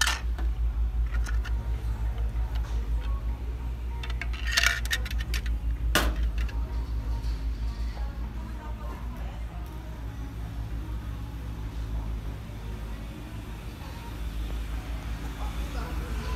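Handling noise from a phone carried along a shop aisle: a steady low rumble with jangling clinks about four seconds in and a sharp click about six seconds in, over faint background music.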